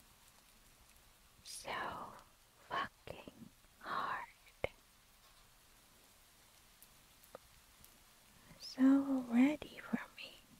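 A woman's breathy whispers and exhalations close to the microphone, a few short ones in the first half, then a short voiced sound near the end.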